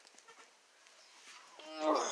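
Near quiet, then about a second and a half in a drawn-out pitched call begins, rising in loudness.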